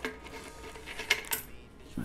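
Loose pennies clinking against each other and the desk as they are handled and sorted by hand: a few light, sharp clinks, most of them about a second in.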